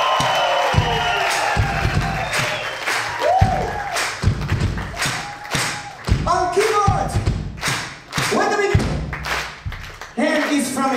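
Live band playing a stop-start groove: short bass-and-drum hits with gaps between them, and a voice calling out short sung phrases into a microphone.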